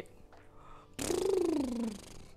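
A woman's drawn-out wordless vocal sound, starting about a second in and lasting about a second, its pitch falling steadily, with breath in it.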